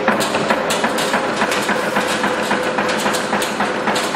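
Z94-4C automatic wire nail making machine running, its strokes making a steady, rapid clatter of knocks, several a second, over a steady hum.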